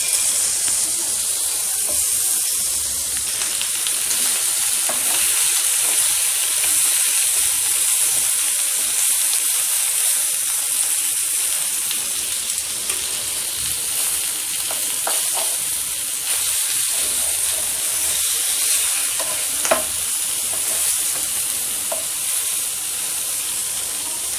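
Marinated chicken pieces frying in hot fat in a nonstick pan: a steady sizzle with a few sharper pops.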